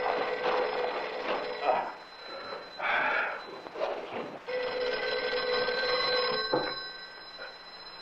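Landline telephone bell ringing in two rings of about two seconds each, with a short clunk as the second ring stops.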